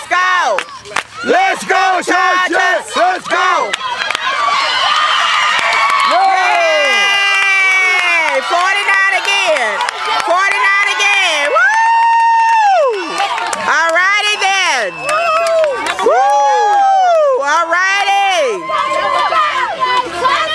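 A crowd of spectators shouting and cheering during a play, many high-pitched voices with children among them. Overlapping yells run throughout, among them several long, drawn-out cries, the longest held about twelve seconds in.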